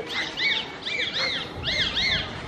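A bird calling: a quick run of high chirps, each rising then falling in pitch, coming in small clusters.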